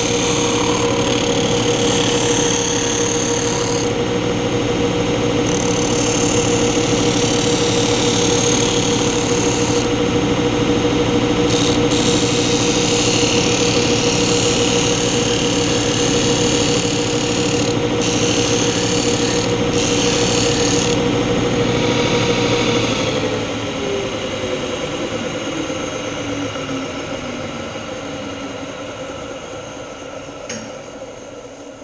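Belt and disc combination sander running with a steady hum while a wooden board is pressed to the sanding disc in several passes, each adding a hiss of abrasive on wood. About three-quarters of the way through the machine is switched off and the motor winds down, its pitch falling and the sound fading.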